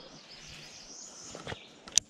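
Faint open-air background with a steady high hiss, a soft click about one and a half seconds in and a sharper click right at the end.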